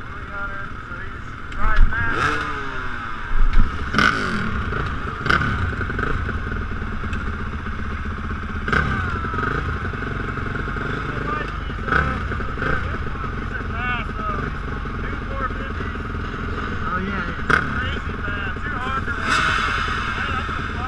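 Several motocross bike engines running on a start line: a steady idle with engines blipped up and down, and the loudest revs about two and three and a half seconds in.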